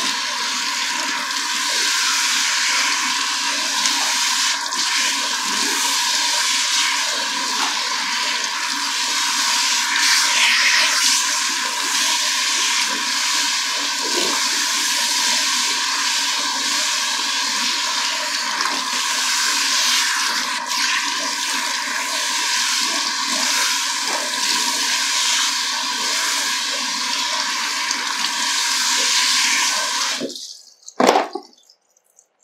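Handheld shower sprayer running steadily, water spraying onto wet hair and splashing into a salon shampoo basin as the hair is rinsed. The water stops abruptly at the very end.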